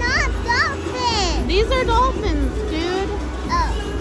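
A young child's high-pitched voice making short, swooping sounds that rise and fall in pitch, with no clear words.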